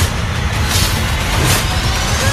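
Sci-fi action film trailer sound effects: a loud, steady low rumble with two sharp hits, about a second in and again near the end.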